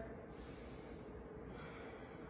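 A woman's soft breath, one short airy puff through the nose, about half a second in, while holding a stretch; a faint steady hum underneath.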